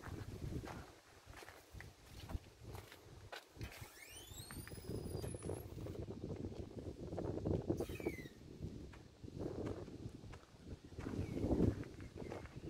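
Full-height metal rotating turnstile turning as someone walks through it, with footsteps. A high squeal rises for about a second and a half around four seconds in, and a shorter falling squeal comes near eight seconds.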